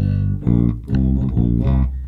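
Electric bass (Fender Jazz Bass) playing a chromatic walk-up from E through F and F sharp to G: a quick run of plucked notes about half a second apart, ending on a held low note.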